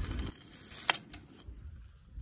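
A freshly split block of fossil shells being handled over beach pebbles: faint rustling and one sharp stone click just before a second in.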